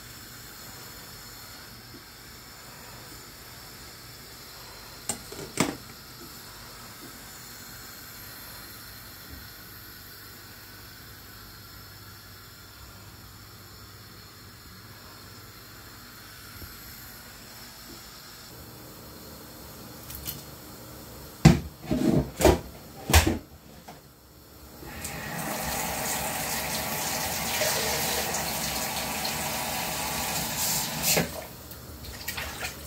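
Faint steady hiss from a steamer pot on a gas burner, then a quick run of loud knocks and clatters, and from about five seconds before the end a kitchen tap running into a metal pot in the sink in a steady rush of water.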